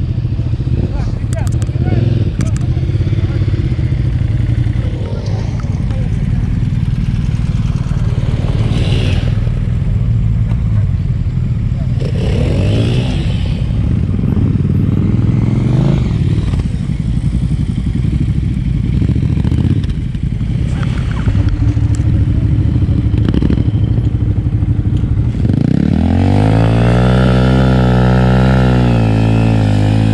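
Several motorcycle engines running and revving across a dirt training ground. Near the end, one dirt bike's engine close by revs up and down, then settles into a steady idle.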